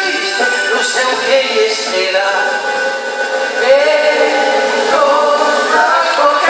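Live folk band playing a Gascon song: male singing over guitars, a drum kit and accordion.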